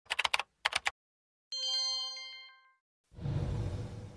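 TV news 'breaking news' intro sting: a quick run of sharp clicks, then a bright multi-tone chime that rings and dies away over about a second. About three seconds in, a low rumbling swell begins.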